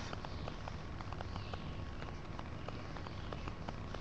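Soft rubbing of a cotton wad over a 23-karat gold-leafed ball finial, with faint irregular ticks and crackles: burnishing off the loose leaf shavings where the sheets overlap.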